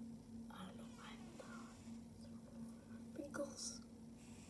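Faint whispered speech in two short stretches, over a steady low hum.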